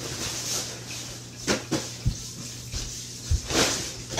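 Bean bag chair rustling, with a few short knocks and thumps as a person climbs onto it and drops into its seat, over a steady low hum.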